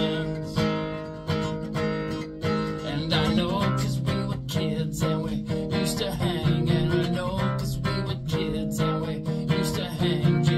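Acoustic guitar strummed in a steady rhythm, chords ringing between the strokes.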